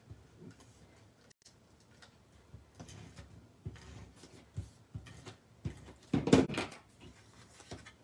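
Sheets of cardstock and patterned paper being handled, slid and pressed down on a paper-covered work mat: soft scattered rustles and light taps, with one short, louder rustle a little after six seconds.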